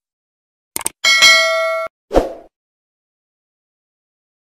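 Subscribe-animation sound effects: a short click about a second in, then a bright bell ding that rings for under a second and cuts off suddenly, then a short thump.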